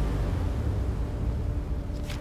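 Dramatic soundtrack cue: a deep, sustained low rumble left after a bass hit, with a brief whoosh at the very end.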